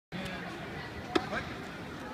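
Background crowd chatter in a large arena, with one sharp impact a little past halfway.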